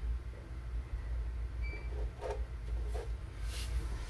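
Steady low hum of a quiet room, with faint small scratches of fine-tip pens drawing on paper and a short hiss near the end.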